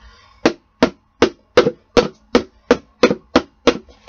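A sharp knife stabbing again and again into the bottom of a plastic Folgers coffee container, punching drain holes: about ten sharp knocks, roughly three a second.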